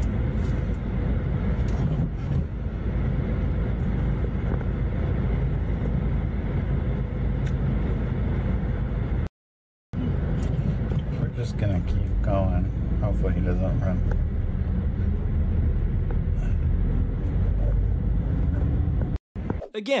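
Steady low rumble of a car and road traffic heard from inside a car, with faint muffled voices now and then. The sound cuts out completely for about half a second around nine seconds in.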